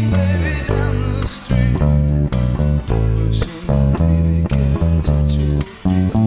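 Electric bass guitar playing a line that lands on the root note at each bar and fills in between with added passing notes as ornaments.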